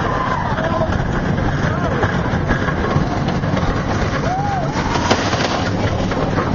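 Steel roller coaster train running along the track at speed, a steady loud rumble with wind rushing past, and riders' shouts and whoops over it.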